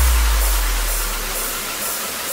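Tail of an electronic intro sting: after the beat stops, a deep bass note fades away over about a second and a half under a steady airy hiss.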